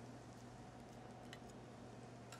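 Near silence: room tone with a steady low hum and a faint click past halfway.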